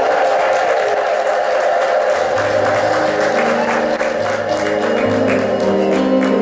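Electronic keyboard playing sustained chords, with low bass notes coming in about two seconds in, and hand-clapping running through it.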